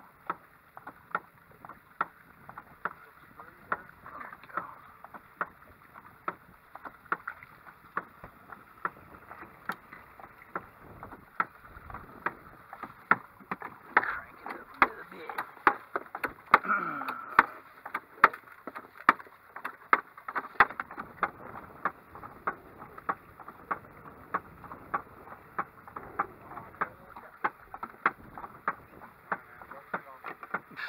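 A motorized fish-attractor 'thumper' striking the boat's hull with a mallet, giving a steady knock about twice a second. The knocking is meant to draw fish under the boat.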